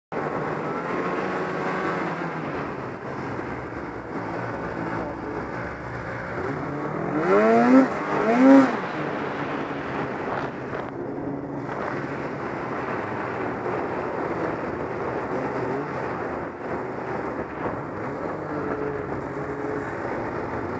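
Snowmobile engine running steadily while under way, heard from on board the sled, with two quick revs rising in pitch about seven and eight and a half seconds in.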